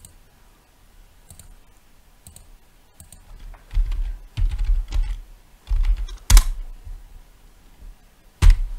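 Typing on a computer keyboard: a few faint clicks, then about halfway through a quick run of keystrokes ending in one louder stroke.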